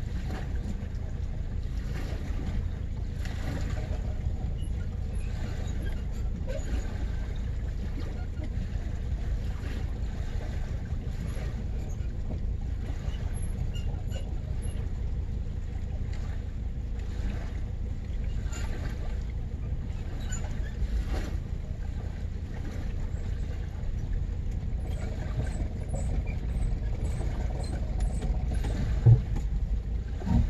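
A steady low rumble heard inside the car's cabin, likely the engine idling while the boat is loaded onto the trailer. A single sharp thump comes about a second before the end.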